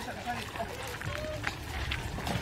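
Footsteps walking on a grassy path, with indistinct voices of people a short way off and wind rumbling on the microphone.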